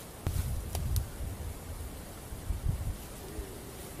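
Rustling and flapping of a 3D leafy-suit camouflage jacket as it is pulled on, with a few sharp clicks in the first second and low thuds in the first second and again past the middle.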